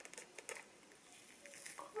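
Faint handling sounds of a book-style cardboard eyeshadow palette being opened: a few light taps near the start, then low rustling.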